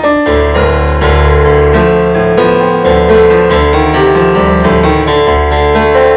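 Electronic keyboard played with a piano sound in free improvisation: held low bass notes that shift every second or so under changing chords and melody, played without a break.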